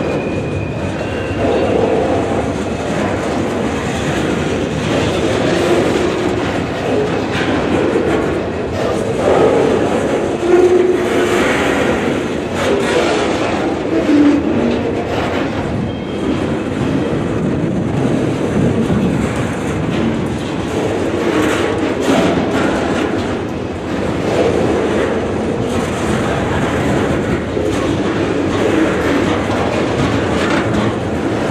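Freight train rolling steadily past: the steel wheels of container-loaded flatcars clattering over the rail joints with a continuous rumble. A faint, brief wheel squeal comes near the start and again about halfway.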